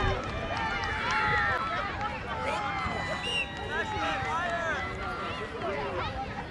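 Many overlapping voices of young players and sideline spectators shouting and calling out across an open soccer field, with high-pitched rising and falling calls and no clear words.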